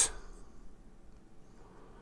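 Quiet room tone with no distinct sound; a spoken word trails off right at the start.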